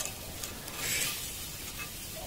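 Pork shashlik on a metal skewer sizzling faintly over glowing embers as the skewer is turned by hand: a soft hiss that swells briefly about a second in.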